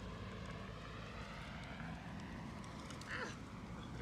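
Faint, steady outdoor background noise with a low hum, and a brief faint sound about three seconds in.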